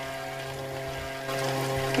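Hand-cranked centrifugal cream separator running at speed: a steady, even hum from its spinning bowl, with skimmed milk streaming from its spout.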